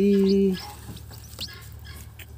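A brief, steady, low 'ooh' in a person's voice at the very start, then a few faint, short, high peeps from a newly hatched chick.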